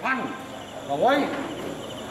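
Crickets chirring at night, a steady high-pitched drone beneath a man's angry speech.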